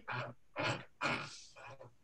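Faint human vocal sounds: four short breaths or half-voiced murmurs, much quieter than ordinary speech.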